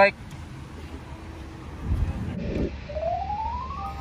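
Low outdoor rumble about halfway through, then a single tone rising steadily in pitch for about a second: a transition sound leading into the outro music.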